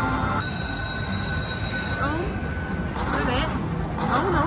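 Video slot machine's electronic sound effects during a free-games bonus: steady held tones for a few seconds, then warbling jingle tones near the end, over busy casino background noise.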